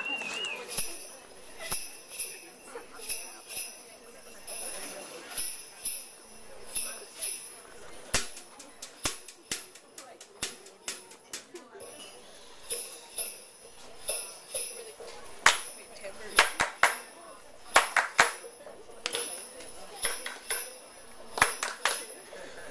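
Quiet room noise broken by many sharp clicks and light jingling, coming irregularly, often several a second.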